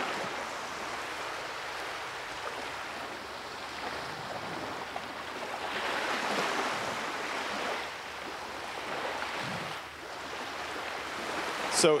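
Recorded ambience of ocean waves breaking, played back over a hall's speakers: a steady wash of surf that swells about six seconds in and eases off again.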